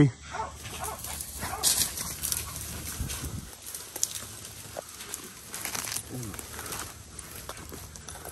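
Rustling and crackling of tall grass and palmetto brush as people move through it, with faint voices and animal calls in the background.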